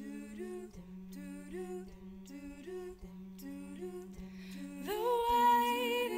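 Women's a cappella group: backing voices hum a held low note under a repeating pattern of stepping harmony notes. About five seconds in, a louder solo voice slides up and holds a long note over them.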